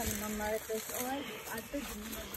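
Indistinct voices of people talking a little way off, without clear words, over a steady hiss.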